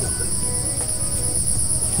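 Insects in the surrounding forest chirping in a steady, high-pitched, rapidly pulsing drone, with a low rushing noise underneath.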